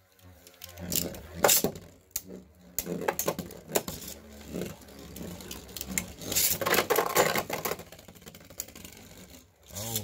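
Beyblade Burst spinning tops whirring and grinding on an orange plastic stadium floor, clacking sharply against each other and the stadium walls in repeated clashes, loudest at about one and a half seconds and again near the middle.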